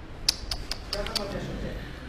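A quick series of about six short, sharp creaks or clicks in the first second and a half, with faint speech further off.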